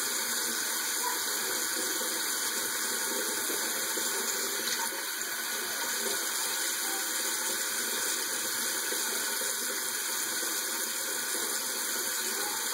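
Water running steadily from a bathroom tap into the sink, an even rush.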